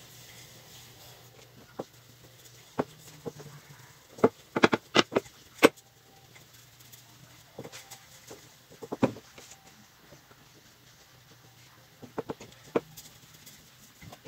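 Wooden rolling pin and hands working cracker dough on a floured pastry mat: scattered light knocks and taps, in small clusters about four to six seconds in, around nine seconds, and again near the end.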